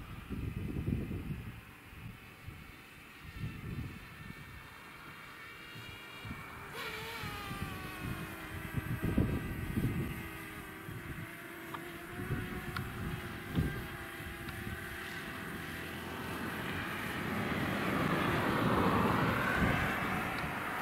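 DJI Mavic quadcopter drone flying, its propellers whining in several thin tones that drift up and down in pitch as the drone manoeuvres, over an irregular low rumble. Near the end a car's tyres and engine rise in a passing hiss.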